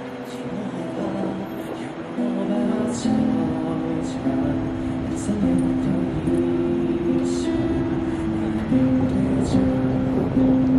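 Live acoustic pop song: two acoustic guitars playing with a man singing into a microphone, long held notes moving from pitch to pitch.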